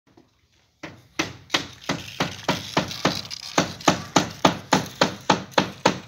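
Hammer striking wood in a steady run of blows, about three a second, starting about a second in.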